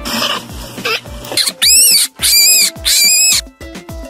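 Rabbit squealing: three loud, high-pitched squeals, each rising and falling in pitch, starting about a second and a half in after a short stretch of hissing noise. Background music plays underneath.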